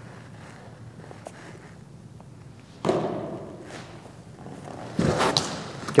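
Two thuds from a pitcher's throwing motion on a portable pitching mound, about two seconds apart: feet landing and the thrown baseball. Each one echoes through a large gym hall.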